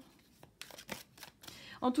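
Tarot cards being handled: a few soft rustles and clicks as a card is taken up, before a woman's voice resumes near the end.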